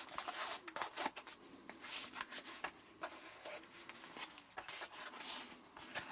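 Waxed canvas roll pouch being untied and unrolled by hand: the stiff canvas rustles and crackles in short, irregular scrapes, with the cord tie sliding free.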